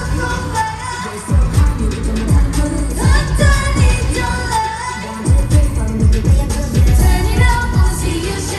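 A K-pop dance track played loud over a concert sound system, with female singing over deep bass drum hits that fall in pitch.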